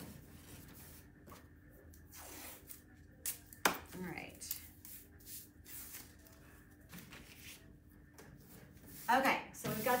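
Blue painter's tape being pulled and torn, with kraft paper rustling as it is handled. A sharp click a little under four seconds in.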